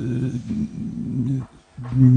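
A man's drawn-out hesitation sound, a low steady "eee" held for about a second and a half, then begun again near the end after a short break.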